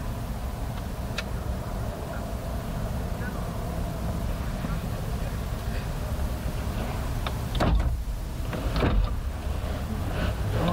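Steady low rumble inside a parked car, with two short louder noises about 7.5 and 9 seconds in.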